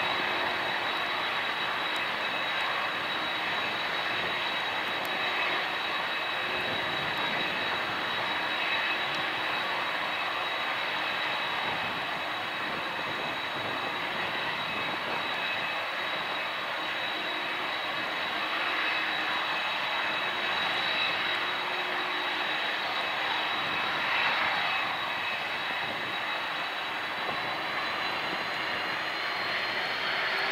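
Boeing 747-400's four General Electric CF6 turbofans running at low power, a steady jet noise with a high whine. Near the end the whine starts to rise in pitch as the engines begin to spool up for takeoff.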